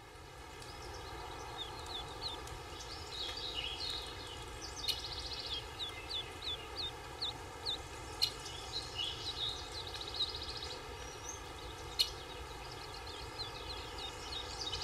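Songbirds chirping, with short repeated chirps and a few quick trills, over a steady outdoor background hiss; a few sharp ticks stand out, the loudest about twelve seconds in.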